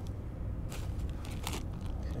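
Faint rustling and a few soft crunches and clicks of hand and clothing movement over sand, above a steady low rumble.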